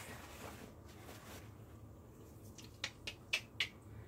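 A few short, sharp clicks from handling things on the work table, bunched together from about two and a half seconds in, over faint room noise.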